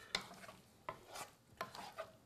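A wooden spoon stirring oil-coated potato chunks in a metal pan, giving several short scrapes and knocks against the pan.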